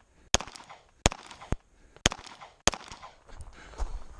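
Four pistol shots fired by the shooter, unevenly spaced over about two and a half seconds.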